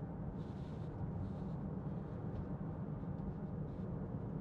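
Inside the cabin of a Range Rover Evoque 2.0 TD4 diesel on the move: a steady low drone of engine and road noise.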